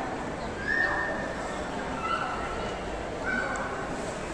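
Three short high-pitched calls, likely a young child's voice, over a steady hubbub of people talking in a busy shopping mall.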